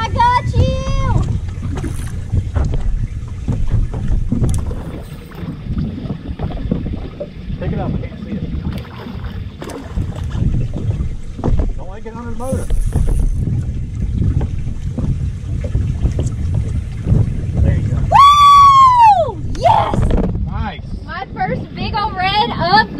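Wind rumbling on the microphone, with a few faint voices and one loud rising-and-falling whoop a few seconds before the end.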